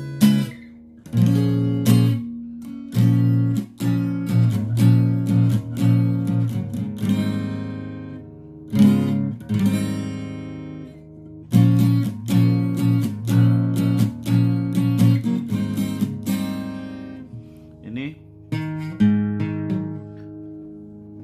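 Yamaha APX 500 II acoustic-electric guitar strummed through a chord progression, each chord ringing on after the strum, with a few short breaks as the fretting hand moves to the next chord.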